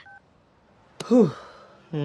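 A short two-tone keypad beep from a mobile phone, then about a second later a brief wordless voice sound from a man, with another one starting near the end.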